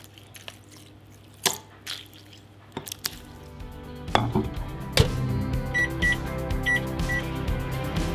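Knocks and clicks of food being tipped from a plastic tub into a bowl and the bowl being handled, then a sharp click. From about four seconds in, music plays, and an LG microwave's keypad gives four short high beeps as its buttons are pressed.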